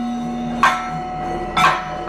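Kathakali percussion accompaniment on chenda and maddalam drums: two sharp strikes about a second apart over a steady ringing tone.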